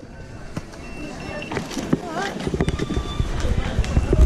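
Busy Underground station ticket-barrier area: footsteps on a hard tiled floor and indistinct voices of passers-by, with a few short high electronic beeps. A low rumble builds from about halfway through.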